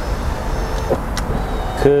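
Electric power window motor in a 1989 BMW E34 520i's front door, running steadily as it drives the glass down, with one short click a little past a second in.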